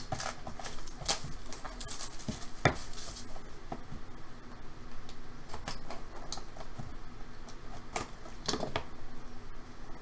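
A small cardboard box being handled and opened by hand: scattered taps, clicks and scrapes of cardboard as it is turned over and its lid is worked free.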